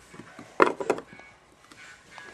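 A quick cluster of sharp knocks and clicks a little over half a second in, from something being handled, with a few faint ticks after.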